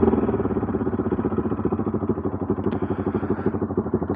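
Bajaj Pulsar NS200 single-cylinder motorcycle engine running at low revs in an even beat, growing gradually quieter.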